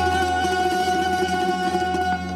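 Bulgarian tamburas playing a folk tune: plucked long-necked lutes over a steady low drone.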